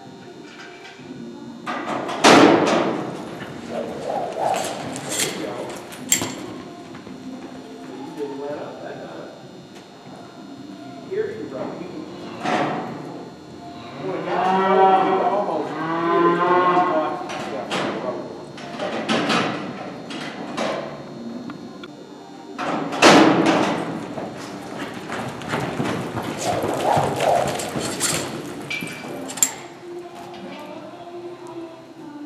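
Cattle mooing, one long drawn-out call about halfway through, with several loud thumps and knocks before and after it.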